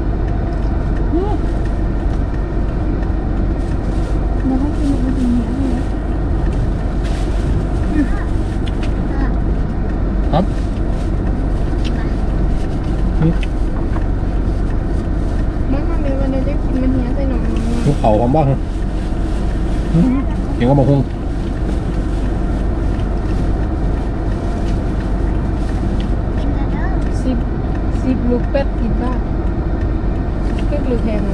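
Steady drone of an idling car engine heard from inside the closed cabin, with faint voices murmuring now and then.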